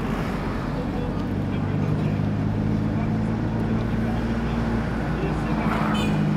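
Car engine and road noise heard from inside the cabin while driving, a steady hum with a low engine drone that comes up about a second and a half in.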